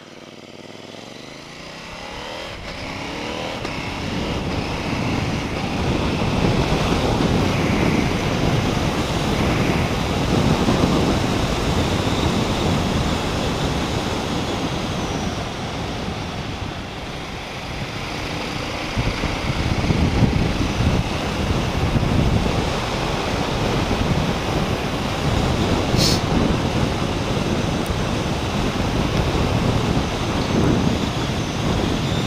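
KTM 790 Duke parallel-twin motorcycle accelerating out of a left turn, its engine note rising over the first few seconds, then steady riding in which wind rushing over the helmet-mounted microphone dominates. A short click near the end.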